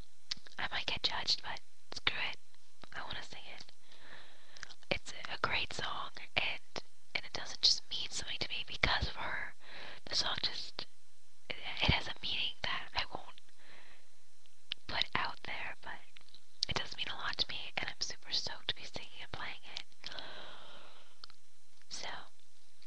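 A person whispering, in short phrases with brief pauses between them, with a faint steady low hum underneath.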